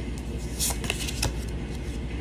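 Tarot cards being handled by hand: a card laid down on the spread and the next drawn from the deck, a few short slides and snaps of card stock. A steady low hum from a washer and dryer runs underneath.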